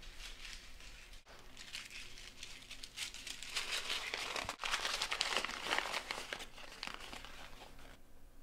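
A crumpled sheet of paper being unfolded and smoothed out by hand, crinkling, loudest in the middle.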